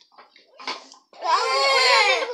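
A child's voice: a brief sound about two thirds of a second in, then a long drawn-out vocal call of about a second, its pitch rising slightly and falling back.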